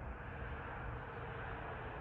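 Faint, steady outdoor background noise, a low rumble and hiss with no distinct event.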